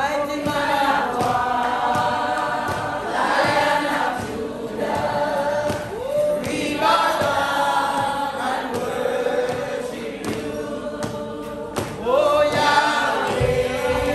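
A church congregation singing a gospel hymn together, many voices in sung phrases a few seconds long.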